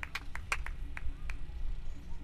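Scattered applause from a small audience: a handful of separate, irregularly spaced handclaps rather than a full round of applause.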